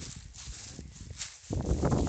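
Footsteps swishing and crunching through tall dry grass and weeds in an uneven walking rhythm, with a louder rustle near the end.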